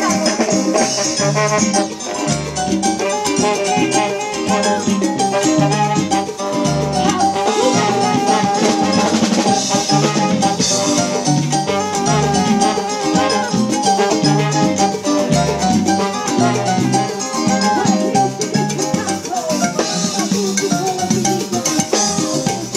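Live salsa band playing: a repeating bass line with keyboard, drum kit and hand percussion keeping a steady Latin rhythm.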